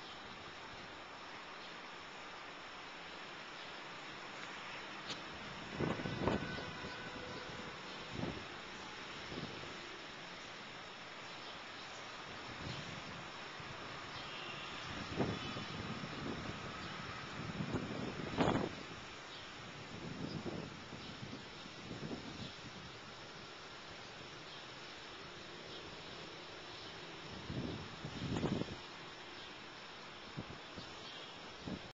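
Steady, even buzz of a swarm of insects around the trees, with a few brief louder rushes scattered through it, the loudest about two-thirds of the way in.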